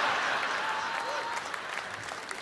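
Live audience applauding and laughing in response to a punchline, the applause slowly dying away.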